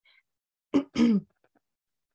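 A woman clearing her throat: two short, harsh rasps a quarter second apart, about a second in.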